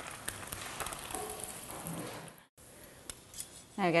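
An egg frying in hot oil in a pan: a steady sizzle with fine crackles. It cuts off abruptly about two and a half seconds in, and a fainter hiss follows.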